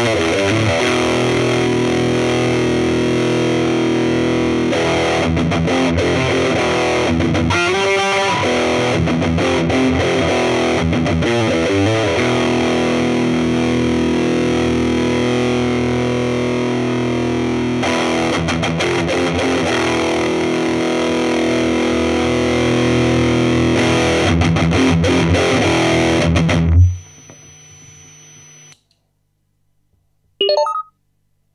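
Electric guitar through a TC Electronic Dark Matter distortion pedal and a small Laney CUB12 tube amp, playing long, ringing distorted chords that change every few seconds. The playing stops suddenly about four-fifths of the way in, leaving a faint amp hum and then silence.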